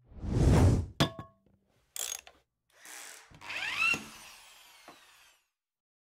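Logo-reveal sound effects: a loud whoosh, a sharp metallic clang with a brief ring, two shorter whooshes, then a ringing sweep that dies away a little after five seconds in.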